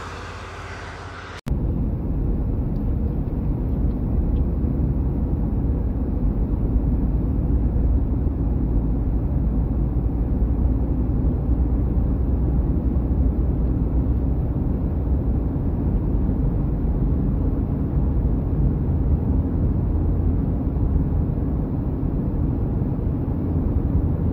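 Starting abruptly about a second and a half in, a steady low rumble of engine and tyre noise inside a car cruising on a highway.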